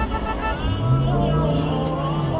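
Background music: a song with a sung vocal line and a long held low note.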